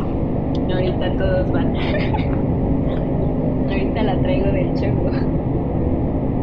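Indistinct voice, with no clear words, over a steady low rumble.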